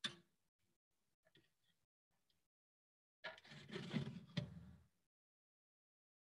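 Porcelain evaporating dish set down on an analytical balance pan with a light click, then, about three seconds in, the balance's glass draft-shield door sliding shut for about a second and a half with a sharp knock partway through.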